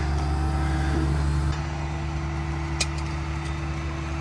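Truck diesel engine running steadily, powering a boom truck's crane as it lifts a boat on its trailer, with a faint steady whine over the low rumble. One sharp click near the end of the third second.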